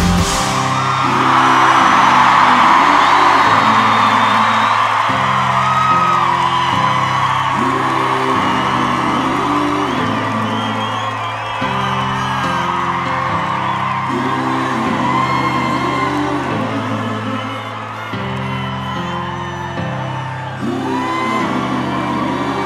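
A live band plays a repeating chord progression with low held bass and keyboard chords that change every second or two, and no lead vocal. A large concert crowd cheers and whoops over it, loudest in the first few seconds.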